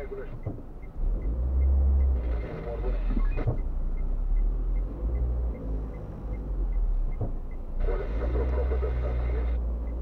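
Low engine and road rumble heard inside a moving car's cabin, stronger from about a second in, with two stretches of muffled talk.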